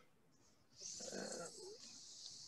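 A faint, murmured "um" from a person on a video call about a second in, followed by a low hiss; otherwise near silence.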